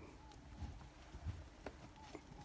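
A few faint, soft thuds and clicks of cattle hooves stepping on soft dirt, otherwise quiet.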